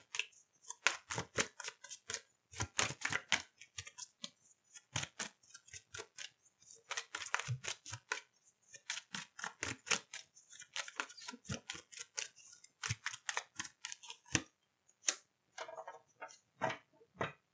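A deck of tarot cards shuffled by hand: rapid runs of card slaps and clicks, broken by short pauses.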